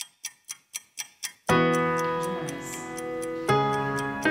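A clock ticking steadily, about four ticks a second, heard alone at first; about a second and a half in, soft music with sustained keyboard chords comes in over it, changing chord near the end.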